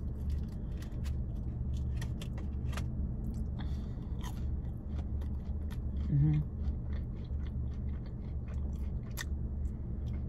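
Close-up chewing of a fried mac and cheese bite dipped in ketchup, with many short wet mouth clicks, over a steady low hum. A brief hummed "mm" about six seconds in.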